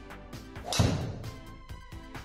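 A driver striking a golf ball: one sharp hit about three-quarters of a second in, the loudest sound, heard over background music.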